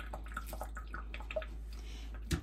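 Water dripping and faint small crackles of eggshell being picked off the corners of a hard-boiled egg by hand, a few clicks in the first second, over a steady low hum.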